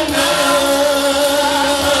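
Gospel worship singing: several voices singing together through microphones, holding long notes.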